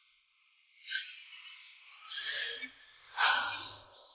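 A woman's breathy gasps, three short ones, the last and loudest near the end.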